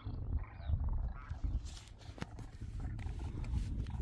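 A flock of demoiselle cranes calling, with short pitched calls early on over a steady low rumble, and a single sharp click about two seconds in.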